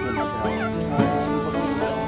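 Background music with long held notes, over which newborn puppies let out short, high squeaky whimpers that rise and fall.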